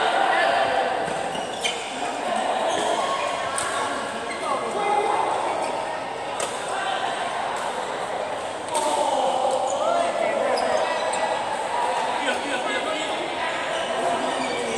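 A badminton doubles rally: sharp racket strikes on the shuttlecock every couple of seconds and shoes squeaking on the court mat, in a large reverberant hall.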